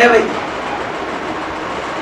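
A man's voice for a moment at the start, then steady, even background noise with nothing else in it.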